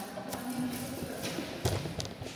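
A few light taps and one louder, deeper thump about three-quarters of the way in, over a short held voice sound in the first half.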